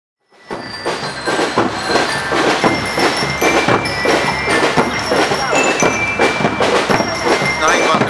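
Marching band playing, starting about half a second in: drum strokes about twice a second with high ringing notes held over them.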